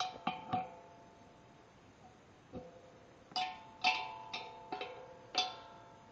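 Metal wrench striking the steel of an air compressor while its wheels are being fitted. There are nine sharp clinks, each ringing on at the same few pitches: three quick ones at the start, one about halfway through, then five over the last two seconds.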